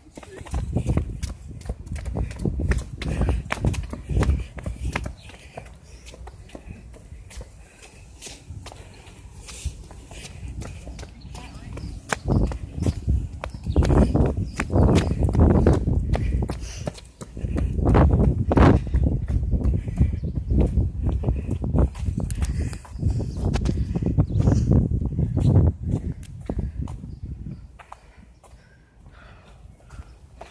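Rapid running footfalls on a concrete sidewalk, heard from a phone carried by someone jogging, with low rumbling and thumps from the shaking microphone. It gets quieter near the end.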